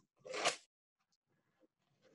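A single short crunch of packaging being handled, about half a second long, just after the start.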